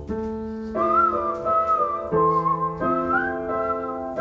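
Upright piano playing sustained chords, changing about every second, under a whistled melody. The whistle comes in about a second in and slides between notes with a slight waver.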